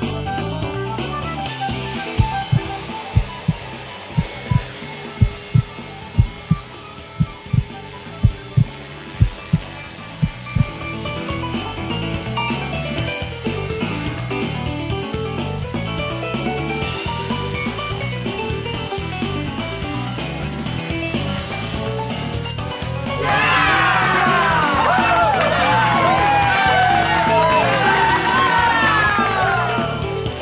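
Background music with a beat, laid over the footage. In the first third it carries a run of sharp, loud hits, and about three-quarters of the way through it gets louder, with a swirl of falling, whistling tones.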